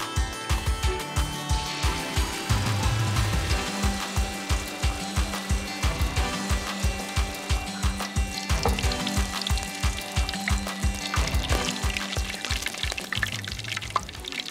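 Background music with a steady beat, over hot oil sizzling and crackling as a batter-dipped stuffed squash blossom deep-fries in a wok.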